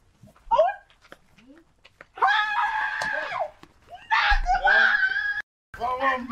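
A woman crying out in excitement: a short call, then two long, high-pitched, drawn-out shouts.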